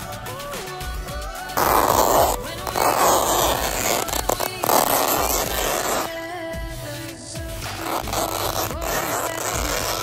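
Background music runs throughout. From about a second and a half in to about six seconds, a knife blade slitting woven road fabric off its roll makes loud, rough ripping and scraping in three stretches.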